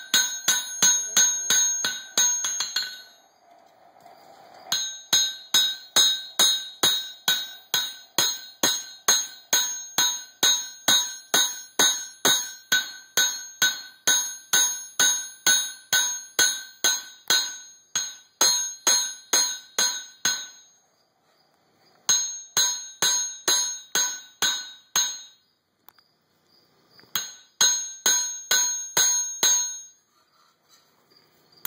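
Hand hammer striking a coil-spring steel knife blank on an anvil: steady runs of ringing blows, about two to three a second, broken by three short pauses.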